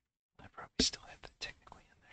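A man whispering or muttering under his breath, a few short breathy words starting about half a second in.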